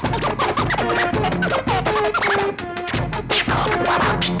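Turntable scratching: a DJ cuts a vinyl record back and forth over a musical backing, making many quick rising and falling scratch sounds across held notes and a beat.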